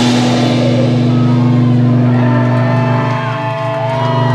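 Live rock band's amplified instruments holding one sustained, droning chord with no drums, while higher tones glide and waver above it.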